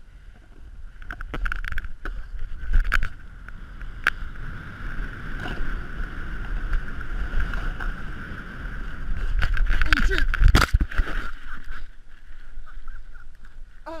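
Snowboard sliding and scraping over snow, with wind rumbling on a body-worn action camera's microphone; the noise swells to its loudest about ten seconds in and drops off sharply just after.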